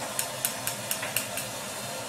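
Bio Ionic StyleWinder curling iron being let out of a curl: a quick run of about seven light clicks, roughly four a second, as the rotating barrel unwinds and the iron is drawn from the hair.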